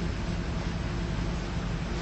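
Steady hiss with a low hum underneath: the background noise of an old, low-quality recording, with no speech.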